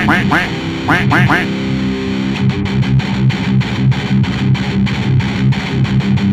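Distorted electric guitar playing a rapid chugging riff through a Zoom G3Xn multi-effects unit's Rectifier-style high-gain amp emulation and 2x12 cabinet emulation, with the amp's bass being turned down to cut the muffling low end.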